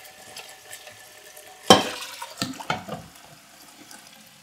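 Kitchen tap running steadily into a stainless steel pot in the sink, with one sharp clink a little under two seconds in and a few lighter knocks after it as a glass Erlenmeyer flask is set down into the pot.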